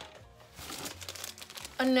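Faint crinkling of plastic packaging as items are handled, with a spoken word near the end.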